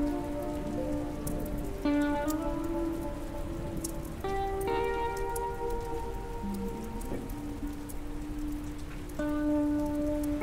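Slow ambient music track: sustained notes and chords that change every couple of seconds, layered over a steady rain sound of pattering drops.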